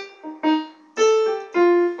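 Electronic keyboard in a piano voice playing single notes one after another, about four of them, each struck and then fading.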